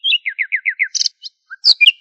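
A bird singing: quick repeated chirps running into about five down-slurred whistled notes, a short harsh note about a second in, and a couple of louder, higher notes near the end.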